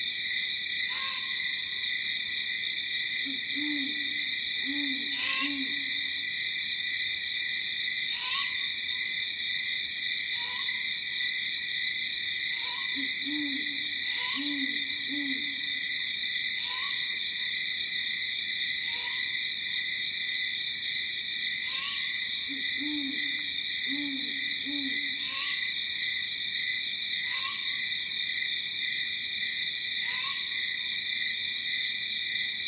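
An owl hooting in runs of three low hoots, coming about every ten seconds, over a steady high-pitched chorus of night insects. Short chirps come about every two seconds.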